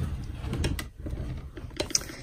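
A laminated-wood vanity drawer being pulled open on its runners: a low rumble with a few sharp clicks and rattles.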